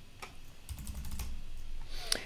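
Computer keyboard typing: a quick run of separate keystrokes as a short word is typed.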